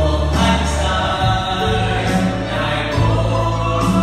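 A gospel worship song sung by several voices, led by a man at the microphone, with a Yamaha electronic keyboard playing sustained chords and a bass line over a steady programmed beat that has a cymbal stroke about once a second.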